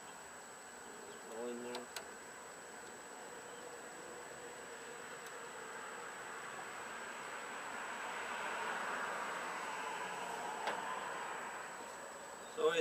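A faint buzzing drone that slowly swells, peaks about three-quarters of the way through, then fades, over a steady low hiss. A short hummed 'mm' comes near the start, and there are a few small metal clicks.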